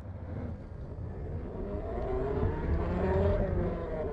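A cinematic swell with a low rumble and tones gliding up and down, building to its loudest about three seconds in and then fading away: a sound-effect sting under the logo reveal.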